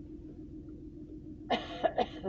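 A person coughing two or three times in quick succession about one and a half seconds in, over a steady low room hum.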